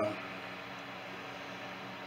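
Steady, faint hiss of room noise with no distinct events.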